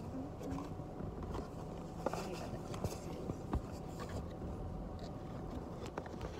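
Faint scattered clicks and rustling over a low steady hum, with a few brief, muffled voice sounds near the start.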